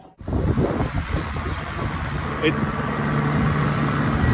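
Street traffic outdoors: a steady low rumble of passing vehicles, with a low engine hum joining about two seconds in.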